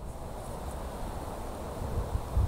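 Steady low wind rumble on the microphone, with no distinct sounds standing out.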